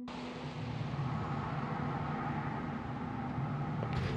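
Steady urban street ambience: an even rush of distant traffic with a low hum, cutting in suddenly as a held musical tone fades away in the first second.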